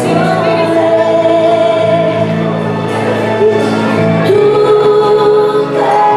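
Waltz music with a singer holding long notes over a steady accompaniment, played for competitive ballroom dancing.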